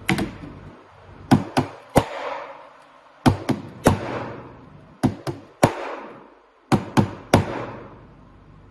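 The corner of a hard object beating on a phone screen covered with a UV-cured 5H-hardened film, an impact test of the film. It makes about a dozen sharp knocks, mostly in quick sets of three, each set trailing off in a short ringing.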